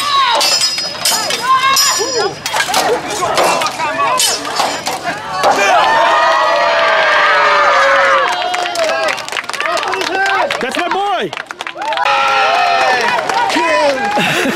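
A crowd of spectators cheering and shouting together, swelling about five and a half seconds in for a few seconds and again near the end. In the first five seconds sharp metallic clinks of swords clashing come through over scattered voices.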